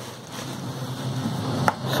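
Clear plastic bag rustling and crinkling as a plastic mini fridge is pulled out of it, growing louder, with one sharp knock of hard plastic near the end.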